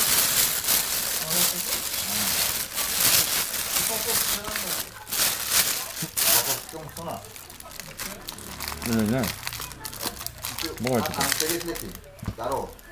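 Thin plastic bag crinkling and rustling as it is handled and pulled open, busiest over the first several seconds and then dying down.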